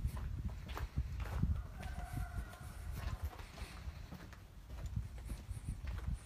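Footsteps on a street with a low wind rumble on the phone's microphone.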